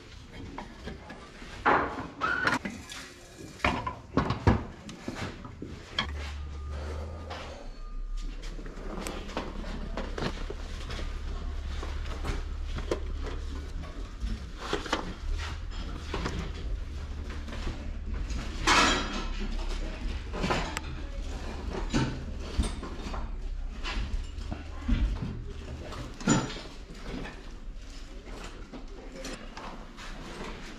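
Clatter of objects being handled: framed pictures, boards and boxes knocking and scraping as they are flipped through, lifted and set down. A low steady hum sits underneath from about six seconds in until near the end.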